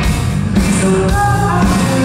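Rock band playing live at concert volume: a male lead vocal sings over electric bass and drums.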